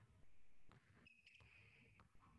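Near silence: faint room tone with a few soft knocks, and a faint high squeal from about a second in.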